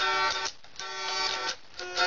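Electric guitar playing chords, each struck chord ringing for about half a second before being cut short, about one chord a second: the intro of a song.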